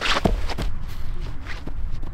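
Footsteps of several people running off across a grass lawn, a few soft footfalls over a rustling, rumbling noise.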